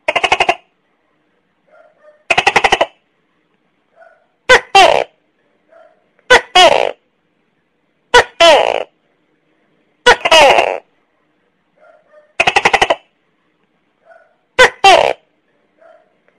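Tokay gecko giving its two-part "to-kay" call over and over, about every two seconds: a short sharp first note, then a longer note that falls in pitch. Two of the calls come as a fast buzzy run of pulses.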